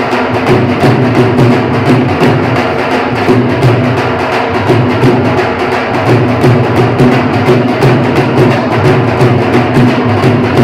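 A group of four Punjabi dhol drums played together, beaten with sticks in a fast, steady rhythm.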